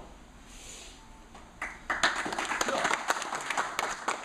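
A small group clapping in applause, starting about a second and a half in as a quick run of many claps that keeps going.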